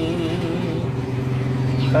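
An elderly man's unaccompanied voice chanting a naat: a long, steady low note between phrases, then the next sung phrase begins near the end.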